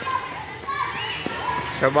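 Schoolchildren playing and calling out in high voices; a man's voice starts speaking near the end.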